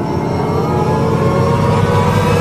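Logo-intro sound effect: a dense, engine-like rumble and whir that swells steadily louder.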